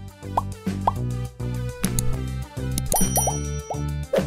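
Outro jingle: a steady electronic tune with a bass line, dotted with quick bubbly pop sound effects, several of them bunched together about three seconds in.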